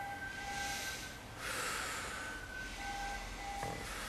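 A man lying on his back breathing hard and fast. He draws long, noisy breaths, one about a second and a half in and another starting near the end. His breath rate is rising in response to the massage.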